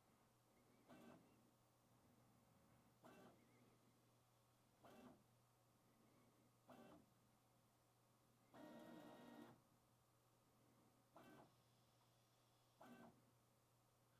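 Very faint 3D printer toolhead motion during a motion accuracy calibration on a vision encoder plate: short stepper-motor moves about every two seconds, with one longer move carrying a steady whine a little past the middle, over a low steady hum.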